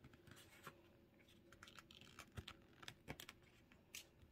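Very faint paper rustling with a few small ticks and scratches as a sheet that is still damp with glue is peeled off the top of a glued paper notepad.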